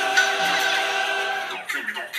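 Orchestral soundtrack music, with a brief sharp peak just after the start, dying away near the end.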